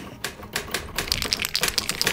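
Typewriter keys being struck: a run of sharp clicks, a few at first, then quick and steady from about half a second in.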